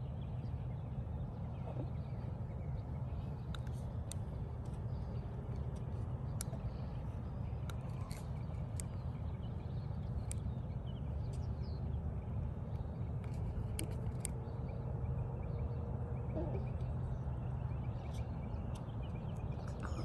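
Steady low outdoor background rumble with a few faint scattered clicks, and a faint steady hum in the middle stretch.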